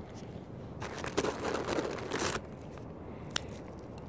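Crunching, crackling rustle of peanuts in the shell, lasting about a second and a half, followed near the end by a single sharp click.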